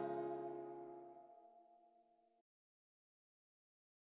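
The song's final guitar chord rings out and fades away over about two seconds, leaving silence.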